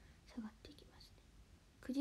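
A woman's voice only: a brief soft murmur about half a second in, then a lull, then her speech resumes clearly near the end.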